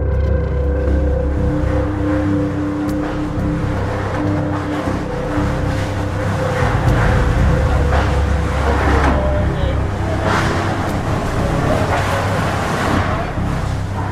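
Hurricane wind roaring on a phone's microphone, a heavy rumble that swells in rough gusts through the second half, under a held music drone.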